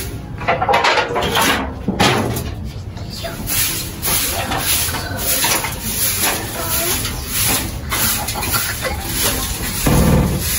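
Irregular rustling, scraping and knocking as a rabbit hutch is cleaned out by hand, with a heavier thump near the end.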